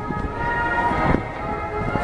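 Military aircraft engines droning overhead as a steady hum, with a few held tones over a low rumble, and wind on the microphone.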